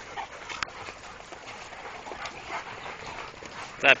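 Quiet sounds of a group of Rhodesian Ridgebacks moving about, with a few faint clicks and short soft whines. A man's voice starts just before the end.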